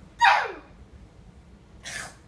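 A sudden loud nonverbal vocal cry that sweeps steeply down in pitch over about half a second, followed near the end by a short breathy burst.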